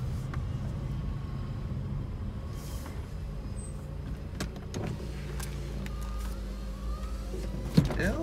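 Car running at low speed, heard from inside the cabin as a steady low hum that changes about six seconds in. A sharp click comes just before the end.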